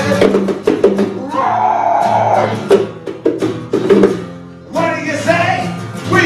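Live acoustic band playing: two acoustic guitars strumming chords under steady hand-drum strikes, with a voice singing a held, bending note about a second and a half in. The music thins out briefly just before the last second and a half.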